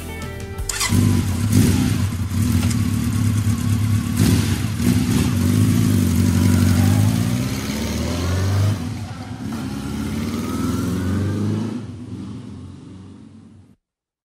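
Motorcycle engine running with rises in revs, the pitch climbing a few times about ten seconds in, then fading away and cutting off just before the end. The last notes of a rock song stop about a second in.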